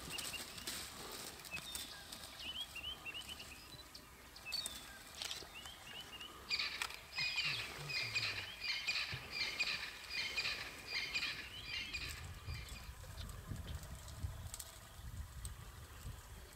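Wild birds calling in the bush: short rising chirps in the first few seconds, then a busy run of repeated high chirping phrases for about five seconds in the middle. Scattered sharp snaps throughout, and a low rumble in the last few seconds.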